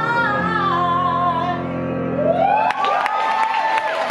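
A female singer's last held note, wavering and falling slightly, over a sustained accompaniment chord. About two and a half seconds in, audience applause and whoops break out.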